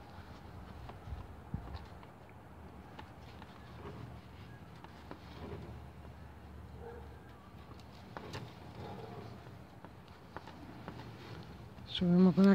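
Crochet hook working wool yarn by hand: faint handling sounds with a few scattered light clicks.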